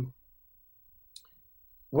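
A man's voice trails off, then near silence with one short, faint click about a second in; his voice returns near the end.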